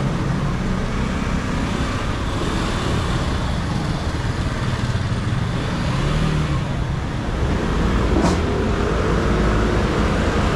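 Street traffic noise: a steady rumble of motor scooters and cars passing, with one short sharp knock about eight seconds in.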